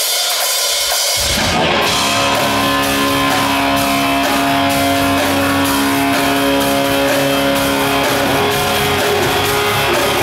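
Live rock instrumental starting up: electric guitar with drums. The full band comes in about a second in, and the guitar holds long, sustained notes.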